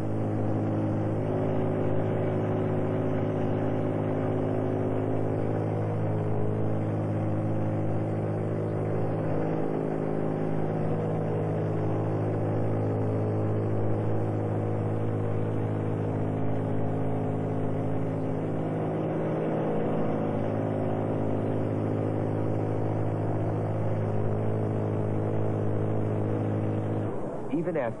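A steady engine drone: a low, even hum with several overtones that hardly changes in pitch, cutting off suddenly about a second before the end.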